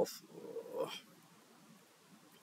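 A man's voice for about the first second: a short drawn-out sound that trails off upward, then low room tone.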